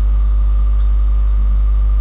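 Steady low electrical mains hum on the recording, with fainter steady higher tones above it.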